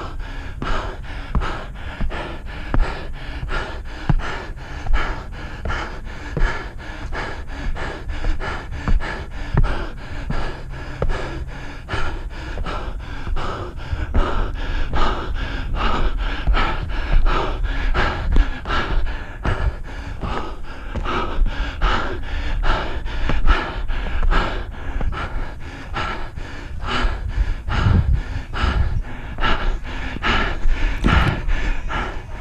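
Hard, rapid panting of a runner climbing steep stairs at speed, the breaths coming in a quick, even rhythm of two to three a second close to the microphone.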